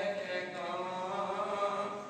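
A man's voice chanting Sikh prayer in a sustained, melodic recitation, with long held notes. The voice starts to fade near the end.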